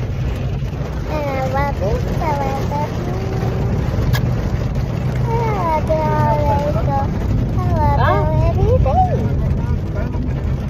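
Steady low rumble of a car heard from inside the cabin, with a child's voice making long, gliding wordless sounds three times over it.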